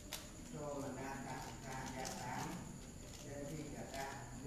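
A monk reciting a text aloud in long, drawn-out phrases, with a sharp click just after the start.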